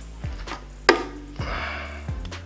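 Small tools handled on a wooden tabletop during reel maintenance: one sharp click about a second in, then a brief scratchy rustle, over a low steady hum.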